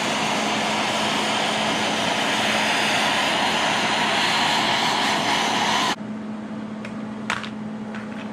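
Handheld MAPP gas torch burning with a steady hiss as it preheats a cast steel differential housing before welding. The flame sound cuts off suddenly about six seconds in, leaving a quieter steady low hum.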